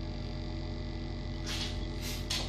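Steady electrical hum of an egg incubator, with a brief rustle-like burst of noise about one and a half seconds in.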